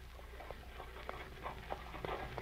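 Horse hooves clip-clopping as a radio-drama sound effect for a horse-drawn carriage, fading in as a steady run of knocks that grows louder.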